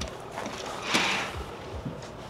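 Curtains at a balcony door being pulled open by hand: a short knock at the start and a brief swish about a second in.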